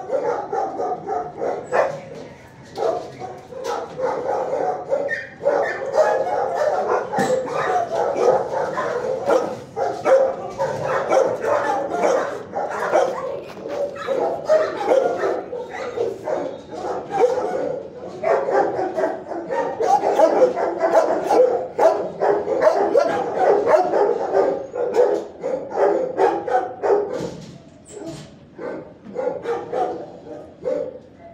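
Shelter dogs barking continuously in a kennel block, the barks of several dogs overlapping into a dense, unbroken din.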